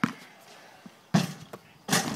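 A basketball hitting hard surfaces: three sharp impacts, one at the start, one a little past a second in and one near the end.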